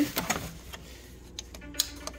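A few light clicks and knocks from a hand moving over a photocopier's plastic side panel and reaching its main power switch. A faint steady hum comes in near the end.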